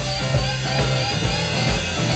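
A live rock band playing an instrumental passage, led by guitars over drums.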